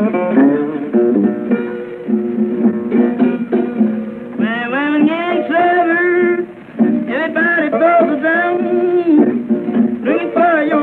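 Solo Delta blues acoustic guitar played with a slide, with wordless singing gliding alongside it in two bending, wavering phrases, over a thin 1930s recording.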